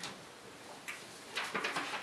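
Sheets of paper being handled and flipped close to a microphone: a few short, irregular crackles, most of them bunched in the second half.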